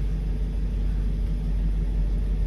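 Steady low rumble of a parked vehicle idling, heard from inside its cabin.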